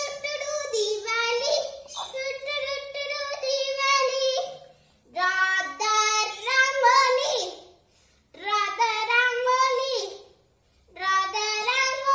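A young girl singing unaccompanied in a high child's voice, in four phrases with short breaks between them.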